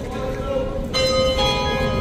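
Church bells ringing, overlapping tones that hang on, with fresh strikes about a second in and again a moment later.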